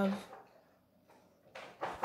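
A woman's spoken word trailing off, then near quiet, then a brief soft rush of noise near the end.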